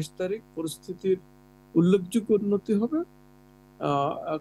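Steady electrical mains hum, a low buzz with a stack of overtones, running under a man's speech and plain in the pauses between his phrases.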